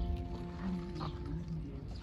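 A gap in the background guitar music, leaving faint outdoor background sound with a few soft distant voices and light clicks.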